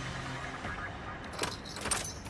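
A ring of keys jangling, with sharp metallic clicks as a key is worked in the lock of a steel cell door, starting about one and a half seconds in.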